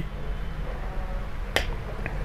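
A pause with quiet room tone and a low steady hum, broken by one sharp click about one and a half seconds in.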